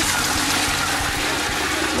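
Water splashing and rushing as it drains from a metal basin through the plug hole, while a hand swishes the water around the drain. The rushing is steady and even.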